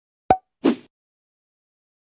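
Two short sound effects on an animated logo: a sharp click about a third of a second in, then a duller, lower plop a moment later.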